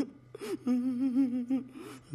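A man's comic whimpering cry: a short gasp, then a long wavering whine that fades out about three-quarters of the way through.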